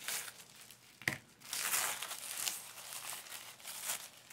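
Gift wrapping crinkling and tearing as a package is opened by hand, with a sharp click about a second in and the loudest rustling just after.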